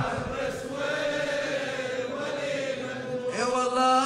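A man's voice chanting an Arabic mourning lament, drawing out one long wavering note for about three seconds before starting a new phrase near the end.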